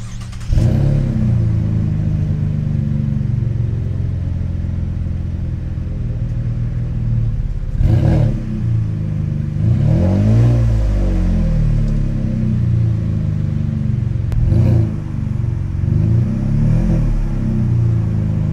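Chevy Colorado pickup's engine heard through its newly fitted aftermarket MBRP exhaust: it starts up about half a second in and idles with a deep steady note. It is revved several times, in short blips and one longer rise and fall about halfway through.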